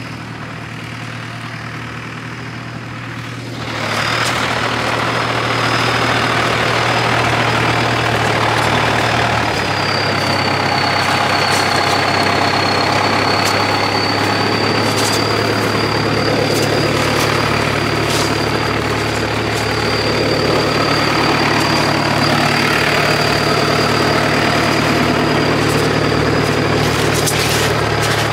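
Engine-driven sprayer running steadily throughout. About three and a half seconds in, the spray lance opens and hisses as white paint is sprayed onto a tree trunk, with a thin steady whistle over the hiss.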